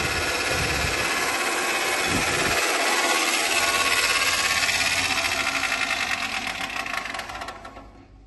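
Four-blade chaff cutter running, its blades chopping dry fodder with a fast, even rattle. The noise dies away near the end.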